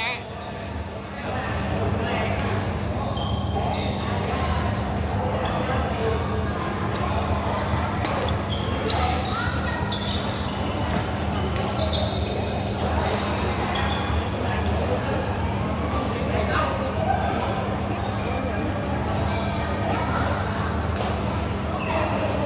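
Indoor badminton hall ambience: sharp racket-on-shuttlecock hits and brief high shoe squeaks on the court floor, over a steady low hum, with voices in the background.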